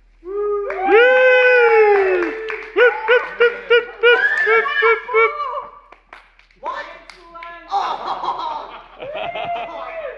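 Spectators laughing loudly: a long, high falling exclamation, then a run of short 'ha-ha' pulses about four a second, with softer laughing and chatter later on.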